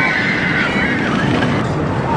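Riders screaming as a Rocky Mountain Construction wooden roller coaster train runs down its steep drop, over the steady rumble of the train on the track.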